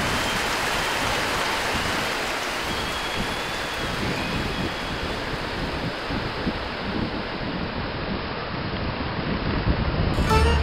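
Rough surf breaking and washing over a rocky shore, a steady rushing noise, with wind on the microphone adding an uneven low rumble.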